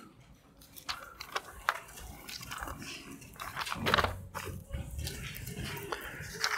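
Thin Bible pages being turned, with soft paper rustles and small irregular clicks.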